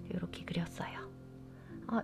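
Soft, half-whispered speech in the first second and again near the end, over quiet background music with steady held tones.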